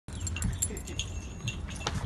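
Metal dog-collar tags jingling in many short clinks as huskies move about, over a low rumble.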